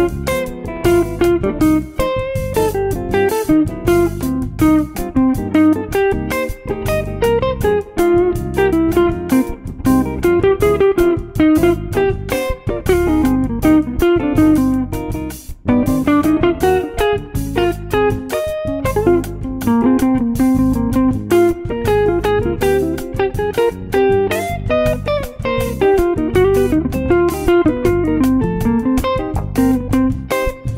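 Hollow-body electric jazz guitar playing a moving melodic line over a medium-tempo samba backing track with bass and percussion.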